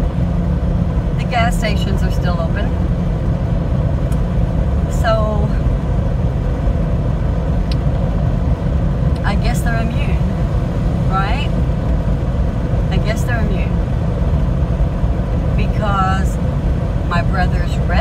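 Steady low rumble of a car driving, heard from inside the cabin, with a voice speaking in short snatches over it.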